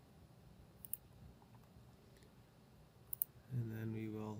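Computer mouse clicks, two quick pairs, about a second in and about three seconds in, as the Wi-Fi network list is opened. Near the end a man's voice makes a drawn-out steady 'uhh'.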